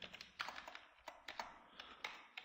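Typing on a computer keyboard: a run of faint, separate keystrokes.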